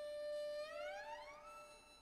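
Solo violin holding a long bowed note, then sliding slowly and smoothly up about an octave in a glissando and settling on the higher note.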